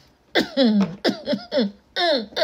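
A person's voice in quick, short syllables, each falling in pitch, starting about a third of a second in: talk the recogniser did not write down.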